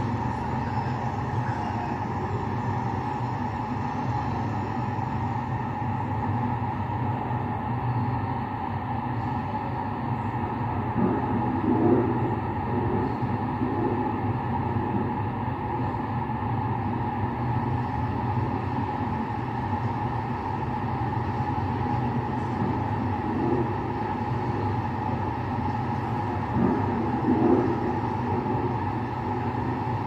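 A steady low rumbling drone with a constant hum, swelling briefly twice, a little over ten seconds in and near the end.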